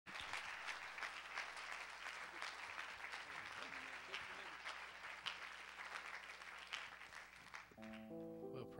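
Congregation applauding, a steady patter of many claps that eases off near the end as a held musical chord comes in.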